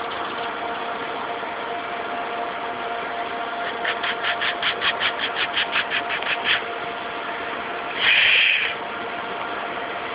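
A steady engine hum running with two faint steady tones. In the middle comes a quick run of about a dozen soft pulses, about five a second, and about eight seconds in there is a brief louder hiss.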